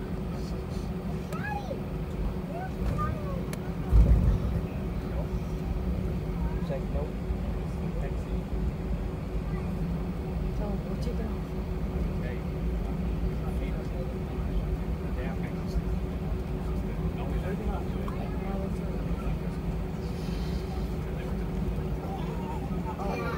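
Airbus A320 cabin noise while taxiing: a steady low engine rumble with a steady hum, and a single short thump about four seconds in. Faint passenger voices can be heard in the cabin.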